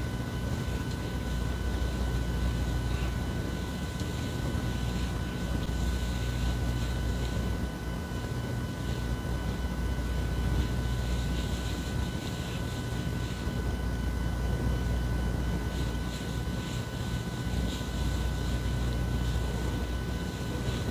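Steady low hum of a running ventilation unit, with a few faint steady whistling tones over it. Soft rustles of hands working product through curly hair come through faintly, near the start and again near the end.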